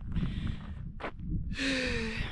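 A woman's heavy breathy exhale, like a sigh, about one and a half seconds in, over wind rumbling on the microphone.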